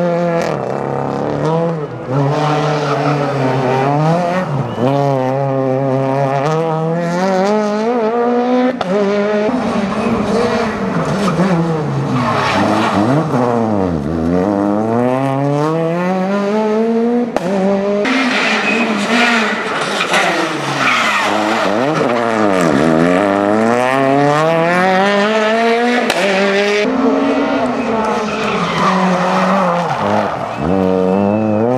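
Peugeot 208 rally car's engine revving hard, falling and climbing again and again as the car slides around a tight turn. The tyres skid and squeal on the cobbles.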